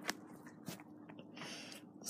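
Faint handling noise as a hand-held camera is picked up and moved: a few light clicks and brief rubbing, over a faint steady hum.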